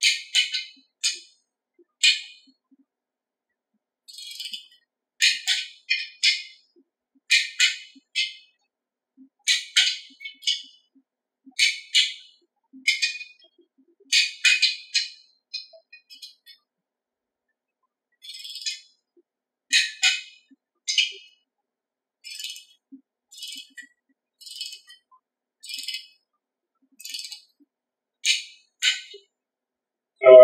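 Ratchet of a long torque wrench clicking in short quick runs every second or two while the main girdle nuts of a Ford 351 Windsor short block are drawn up to 40 foot-pounds.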